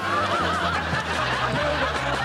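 Audience laughter over a backing song whose bass line changes note in steps.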